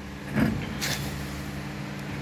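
A steady low machine hum, with two brief handling noises from the gear cluster and shaft being fitted by hand: a short sound about half a second in and a quick scrape just before one second.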